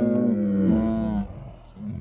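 Young men laughing loudly together, one long drawn-out laugh falling slowly in pitch and breaking off just over a second in, then fainter laughter.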